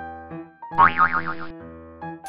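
A cartoon "boing" sound effect, a springy tone wobbling up and down several times for under a second, starting just before the middle and cutting off suddenly, over light background music.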